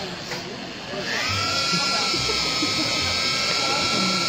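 Corded electric drill with a mixing paddle spinning up about a second in and then running at a steady pitch, churning thick milkshake in a metal trash can.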